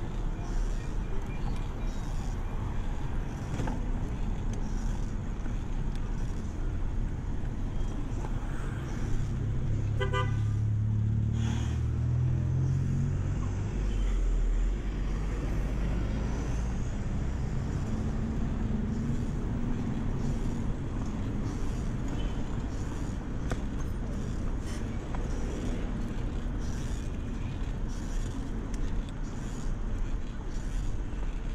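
Steady wind rush and road rumble from riding a bicycle along a city street, with traffic around. About ten seconds in, a vehicle horn toots briefly, and a passing vehicle's low engine rumble follows for a few seconds.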